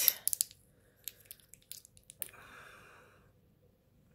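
Handling noise from small corked glass bottles being held up and moved in the hand: a few faint clicks and taps, then a soft rustle a little past halfway.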